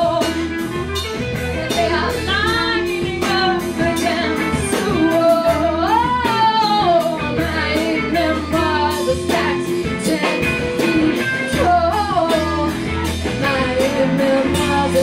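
Live rock band playing: a woman singing over two electric guitars, a bass guitar and a drum kit keeping a steady beat.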